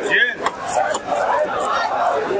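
Voices talking in the background, with a few faint clinks and scrapes of fish being cut on an upright blade.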